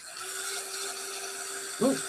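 Handheld electric dryer blowing steadily on the wet watercolour painting, a constant rushing noise with a steady motor hum under it.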